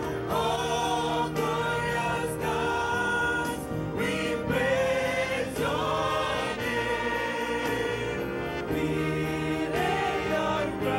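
Church choir singing a gospel worship song in unison, accompanied by a live band of keyboards, saxophone, trumpet and violins.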